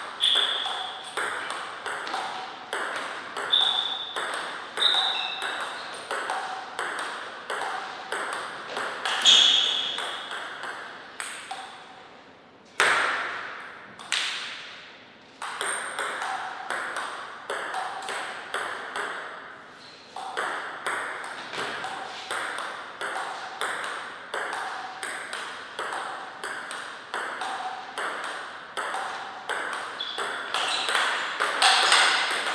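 Table tennis ball clicking back and forth between paddles and table in quick rallies, about two hits a second, each hit ringing briefly in the hall. Partway through the rallies stop, and two louder single knocks with long fading tails are heard before play starts again.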